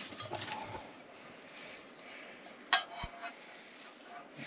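Metal camp mugs being handled and picked up, with one sharp metallic clink a little under three seconds in that rings briefly, then a soft low bump.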